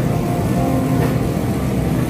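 Steady low hum and rumble of supermarket background noise, with no distinct event standing out.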